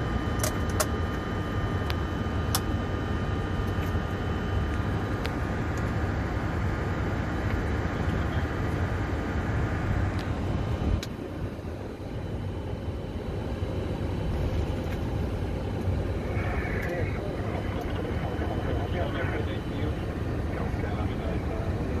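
Flight-deck noise of a Boeing 747-400 freighter taxiing: a steady low rumble with a thin whine over it, and a few sharp switch-like clicks in the first seconds. About halfway through, a single click is followed by a dip in level as part of the whine stops.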